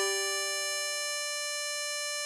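A 24-hole tremolo harmonica holding one steady note, D5, drawn on hole 10.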